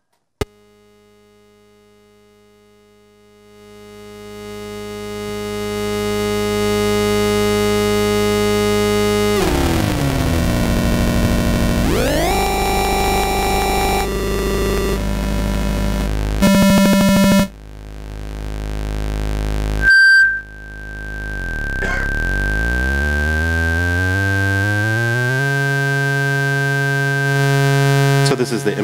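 Software synthesizer patch in Native Instruments Reaktor 6: a sine-wave oscillator fed through a recreated MOTM-120 sub-octave multiplexer, giving a buzzy stack of square-wave sub-octave tones. The sound fades in, slides down in pitch about a third of the way through, steps through several pitches, and has a short louder burst just past halfway. In the last third a thin high tone holds steady while the lower tones sweep down and back up.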